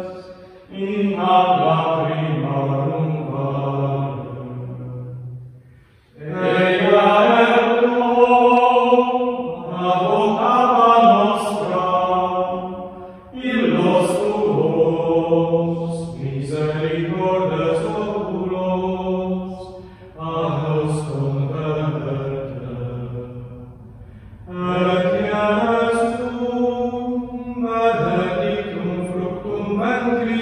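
Male voices singing a slow unaccompanied liturgical chant in phrases of a few seconds, each separated by a short pause for breath.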